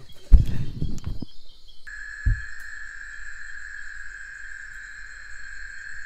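Low bumps and rumbling in the first second, with another thud a little later; then, about two seconds in, an insect's steady high buzz sets in and holds unbroken.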